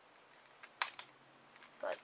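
Two quick, sharp plastic clicks, about a fifth of a second apart, from the hard plastic puzzle cubes being handled; otherwise quiet room tone.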